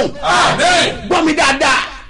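A man's loud, excited shouting: drawn-out, exclaiming cries that break off just before the end.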